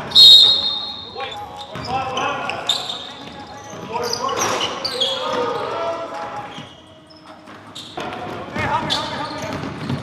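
A referee's whistle blown once, a sharp steady blast of about a second that is the loudest sound. Then players' voices calling out and a basketball bouncing on the hardwood gym floor.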